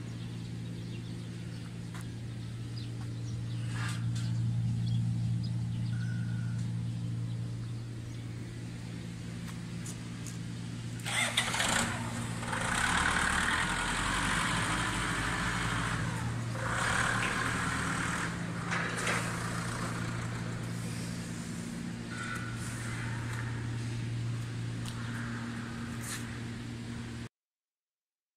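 Small single-cylinder diesel engine running steadily at an even pitch, belt-driving a concrete pan mixer's paddles. Several bursts of rushing noise come over it in the middle.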